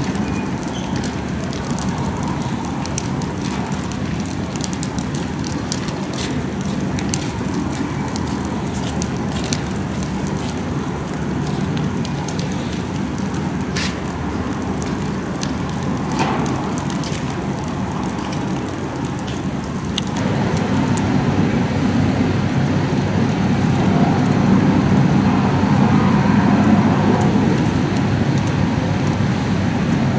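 Street fire crackling, with sharp cracks over a steady low rumble that grows louder about two-thirds of the way through.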